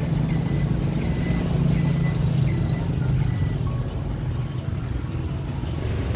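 Steady low rumble of street traffic, with faint background music over it.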